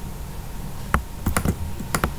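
A few scattered clicks of computer keyboard keys, one about a second in and a quick pair near the end, over a low steady hum.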